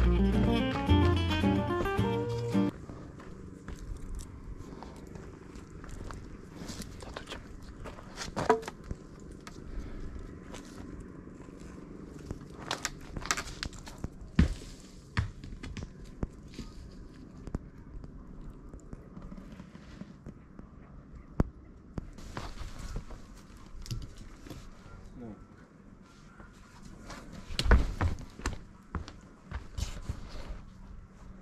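Acoustic guitar music that stops about two and a half seconds in, then footsteps on a dirt and leaf-litter forest trail: scattered crunches and knocks over a faint outdoor background, with a louder cluster of steps near the end.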